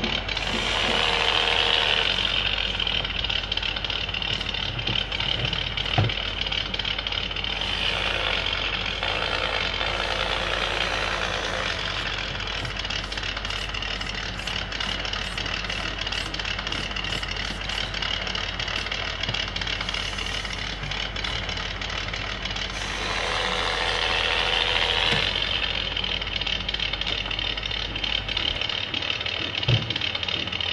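Micro-scale RC crawler's small electric motor and gear train whirring with a high whine as it drives. It swells louder three times, near the start, about a third of the way in and near the end, and there is a single sharp click about six seconds in.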